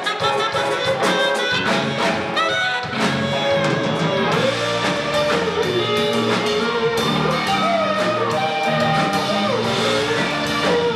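Live band playing an instrumental passage: saxophone and electric guitars over bass and drums, with bending lead notes in the second half.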